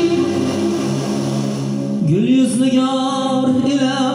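Live amplified music: a Korg keyboard sustaining chords, and about halfway through a male singer comes in on the microphone, sliding up into a long held note.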